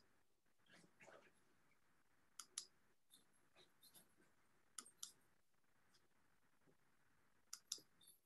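Faint computer mouse clicks, mostly double clicks repeating about every two and a half seconds, over a near-silent room, while a screen share is set up.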